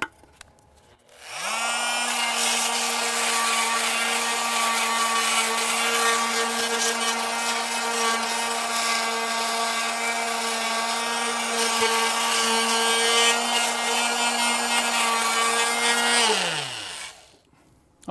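Oscillating multi-tool with a pointed sanding pad grinding flaky rust and scale off a steel battery tray. The motor spins up about a second in and holds a steady high hum over the rasp of the pad on the metal, then winds down with falling pitch near the end.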